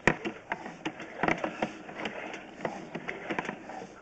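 Drain-inspection camera push rod being fed along a sewer, its reel and cable making irregular clicks and knocks.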